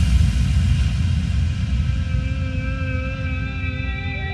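Electronic music demo of hard EDM sample-pack sounds: a dense, deep rumbling texture that slowly fades, with several steady high sustained tones coming in about halfway through.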